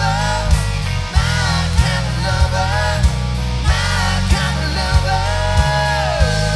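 Rock band playing: a drum kit keeping a steady beat of about one and a half hits a second under electric guitars, with a melody line that bends and holds notes.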